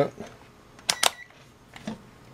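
Rotary function dial of a Kasuntest ZT102 digital multimeter being turned. Two sharp detent clicks close together about a second in, with a brief faint tone after the second, then a softer click near the end.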